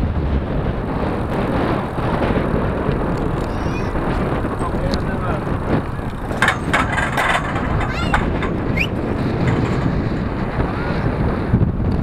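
Wind buffeting the microphone of a bicycle-mounted camera while riding, with about a second of clattering halfway through as the bike rolls over a steel cattle grid.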